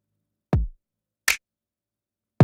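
Programmed drums played back through the UAD Empirical Labs Distressor plugin in nuke mode, pulverized and distorted. About half a second in there is a kick with a steeply falling pitch and a clicky attack, and later a short, brighter hit.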